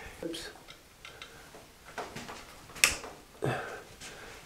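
Small metal clicks and taps from the parts of a steel overhead pulley being fitted back together by hand, with one sharp click a little under three seconds in.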